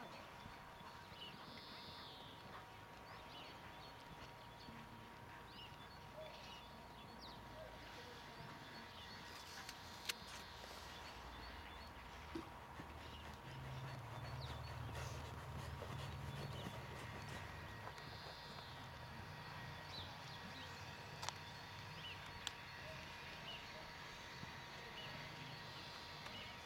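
Faint, muffled hoofbeats of a Friesian horse trotting under a rider on arena sand, with a couple of sharp clicks and a low rumble for a few seconds in the middle.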